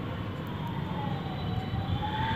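Steady low background rumble with a faint, thin tone that slowly dips and rises in pitch.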